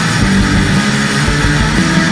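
Black thrash metal recording playing loud and steady, with guitar and drums.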